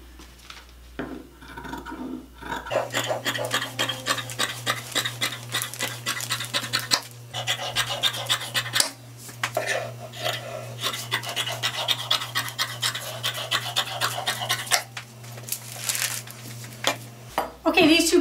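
Scissors cutting through fabric and paper pattern pieces: a dense run of quick scratchy snips and rustles over a steady low hum, starting about three seconds in and stopping shortly before the end.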